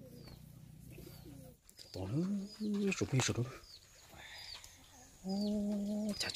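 A small bird chirping repeatedly with short high falling notes, and a man's voice giving three drawn-out low calls, the first about two seconds in and the last near the end.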